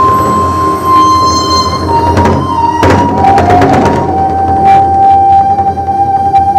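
Korean barrel drums (buk) struck a few sharp times over music with a long held melodic note, which drops in pitch about three seconds in.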